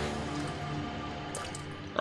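Water sloshing and dripping in a plastic barrel crowded with live catfish as the water is churned, under quiet background music.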